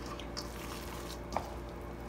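Raw ground-beef meatloaf mixture sliding and squishing out of a stainless-steel mixing bowl into a steel pan, with a light click a little over a second in, over a low steady hum.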